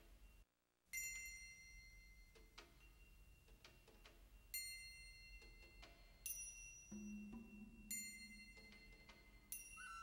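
Soft instrumental music: sparse struck bell-like mallet tones, each ringing out, with a low held note entering about seven seconds in. A brief dropout to silence comes just under a second in.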